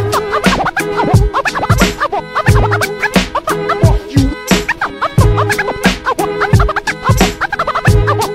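Hip hop beat with a steady kick drum, with turntable scratches cut in over it as many short, quick up-and-down sweeps.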